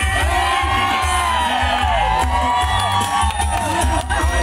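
Dance music over loudspeakers with a steady bass beat, and a crowd of dancers cheering and whooping over it, many voices overlapping.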